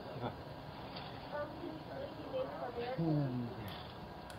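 Faint, indistinct voices picked up by a doorbell camera's microphone, over a steady background hiss; the voices come in short phrases in the second half.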